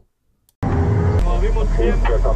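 Men's voices over a loud, steady, low vehicle rumble. It starts abruptly about half a second in, after a near-silent gap.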